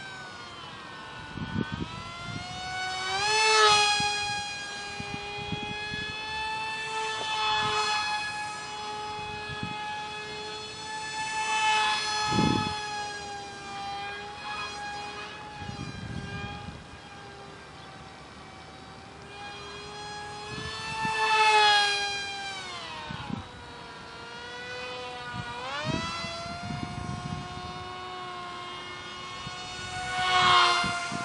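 Steady high-pitched whine of a micro delta wing's tiny 8 mm electric motor spinning a direct-drive propeller. It swells and bends in pitch each time the plane passes close, about every nine seconds.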